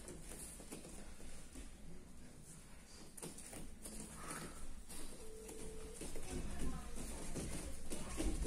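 Scuffling and thuds of bare feet and bodies on gym mats during standing no-gi grappling, with faint, indistinct voices. A short steady tone sounds about five seconds in.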